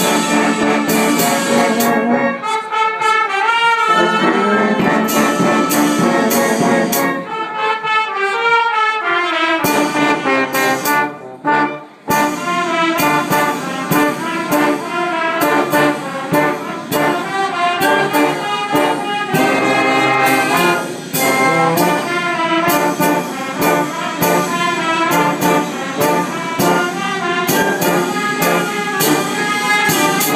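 Brass band of trumpets and tubas playing together under a conductor. The music breaks off briefly about a third of the way in, then the full band comes back in.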